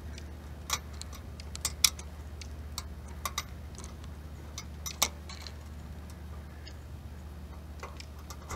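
Scattered sharp clicks and ticks, about seven in the first five seconds and irregularly spaced, over a steady low hum.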